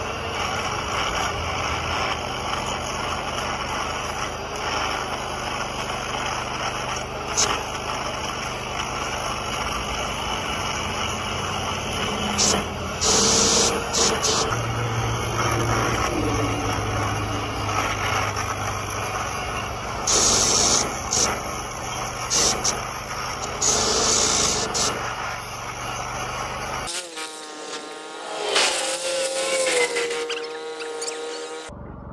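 Angle grinder with a cutting disc cutting through steel on an excavator arm: the motor runs steadily, with several louder spells as the disc bites into the metal, and it cuts off suddenly about three seconds before the end.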